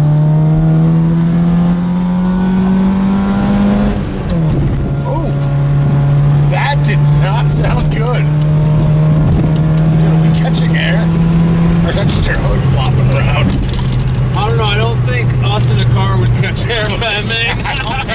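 Honda Civic four-cylinder engine, breathing through a jerry-rigged open air intake, pulling up a hill as heard inside the cabin: the revs climb for about four seconds, fall at a gear change, climb slowly again, and fall at a second gear change about twelve seconds in.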